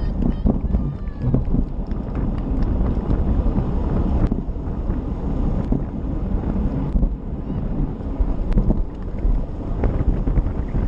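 Wind buffeting a bicycle-mounted action camera's microphone at about 25 mph, over tyre and road noise, with a few sharp clicks and knocks from the bike on the road surface.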